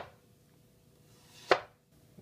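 A chef's knife slices through a peeled potato and strikes the cutting board: once right at the start and again about a second and a half in, with quiet between the cuts.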